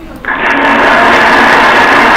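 A loud, steady, rough whirring noise from a slide-show sound effect. It switches on suddenly about a quarter second in and holds at an even level, played as the answer is revealed on the slide.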